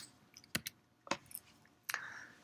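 A few short, sharp clicks and taps, about six, scattered unevenly over two seconds.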